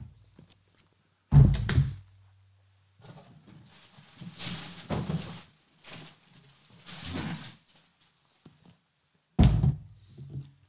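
Cardboard product boxes set down on a tabletop: a heavy thud about a second in and another near the end, with cardboard sliding and rubbing against cardboard in between.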